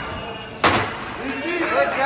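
A single sharp metallic bang about two-thirds of a second in, as the bar of a ninja-course vertical climbing obstacle slams into the notches of its toothed rails. A voice calls out in a drawn-out rise and fall near the end.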